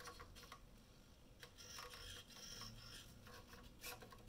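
Near silence, with faint whirring from the 3-axis animated skull's hobby servos as they turn its head, starting about a second and a half in and lasting about a second, and a few light clicks.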